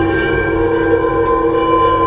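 Logo-intro sound design: a chord of steady held tones over a low rumble, sustained at an even level.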